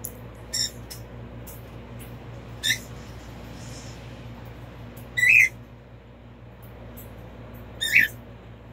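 A cat giving four short, high-pitched meows about two seconds apart, the third the loudest, over a steady low hum.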